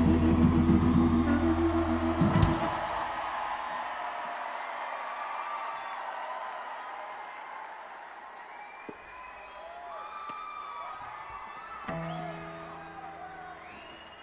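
Live rock band with electric guitar, bass and drums ending a song on a final chord that cuts off about two and a half seconds in. An arena crowd then cheers and whoops as the sound fades, with a short low guitar note near the end.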